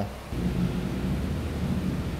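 A steady low mechanical rumble, with a few even low pitches held under it, starts a moment in and holds without change.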